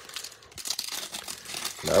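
The foil wrapper of a trading card pack crinkling and tearing as hands rip it open, a dense crackly rustle starting about half a second in.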